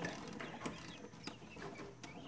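Newly hatched Pharaoh quail chicks peeping faintly, a few short scattered chirps.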